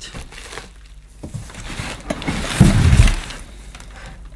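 Crumpled brown packing paper rustling inside a cardboard box as items are pulled out, with a dull, loud knock about two and a half seconds in.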